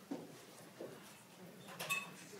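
Faint hearing-room noise: a few soft knocks and shuffles, with a short squeak near the end.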